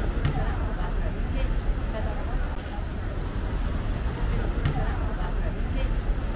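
Busy pedestrian street ambience: passers-by talking and a general crowd murmur, over a steady low rumble of road traffic.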